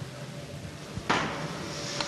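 A man blowing into the mouthpiece of an AlcoScan EBS-010 breath-alcohol tester to give a breath sample. The breath starts suddenly about a second in and goes on as a steady rush of air for about a second.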